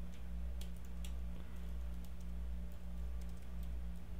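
Typing on a computer keyboard: sparse, irregular soft keystrokes while code is entered, over a steady low hum.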